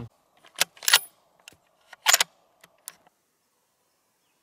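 A string of sharp metallic clicks and rattles in a few quick groups over about two and a half seconds, the handling sound of a bolt-action .243 rifle, typical of its bolt being opened and closed to cycle a round after a shot.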